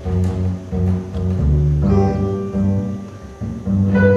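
Double bass and piano playing a piece together live, the bass's low held notes under the piano's higher notes. The sound dips briefly a little after three seconds, then the music swells again.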